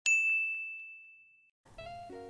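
A single bright ding, a logo chime sound effect, struck once and ringing out as it fades over about a second and a half. Music begins softly near the end.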